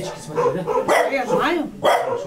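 Two people talking, with a dog barking over the voices a couple of times, the sharpest bark near the end.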